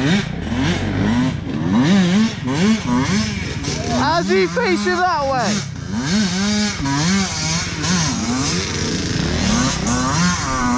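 Enduro dirt bike engine revving up and down as the throttle is worked along a trail, with a burst of hard, high revving about halfway through.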